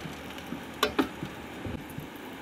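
Small potatoes boiling in water pooled in a tilted frying pan, a steady low hiss, with two light clicks about a second in as a lid is lowered over the pan.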